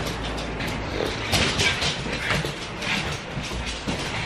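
Two pet dogs play-fighting over a toy: irregular animal noises and scuffling, with rustling close to the microphone.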